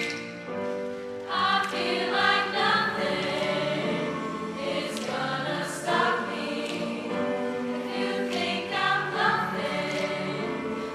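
Mixed high school choir singing behind a girl soloist on a microphone, with a few sharp finger snaps from the choir.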